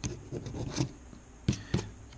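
A red plastic scratcher tool scraping the coating off a lottery scratch-off ticket in a few short strokes.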